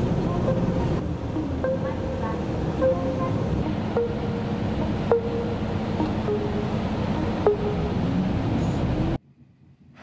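Outdoor street noise: a steady rumble of traffic and wind, with faint music over it. It cuts off abruptly about a second before the end.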